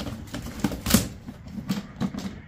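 A hard-shell briefcase being handled and lifted off a stack of briefcases: a sharp knock about a second in, with a few lighter clunks and scrapes around it.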